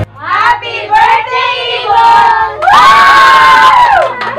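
A family group of children and adults shouting and cheering excitedly with many voices overlapping, ending in one long shout held together for about a second.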